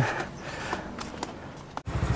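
Faint, even background noise with a few soft clicks, which cuts out abruptly near the end.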